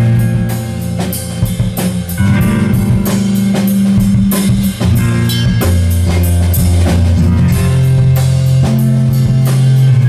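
A live rock band playing: a drum kit keeping a steady beat of several hits a second under electric guitar and low held bass notes that shift pitch every second or two.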